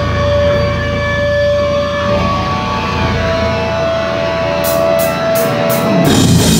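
Electric guitar feedback held through the amps as long steady whining tones that shift pitch a couple of times, over a low amp drone, with no drums. Near the end come four quick high clicks, a drummer's count-in on hi-hat or sticks.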